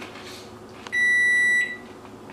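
Over-the-range microwave giving one long electronic beep, a steady high tone lasting under a second: its timer running out.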